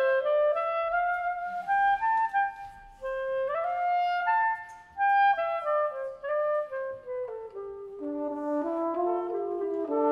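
Clarinet playing a solo Swiss folk-music melody that rises and falls stepwise, with two short breaks. About eight seconds in, a brass horn joins below it with a descending line.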